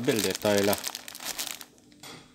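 A plastic bag full of powder crinkling as it is handled and pressed down on a kitchen scale, after a brief spoken word at the start.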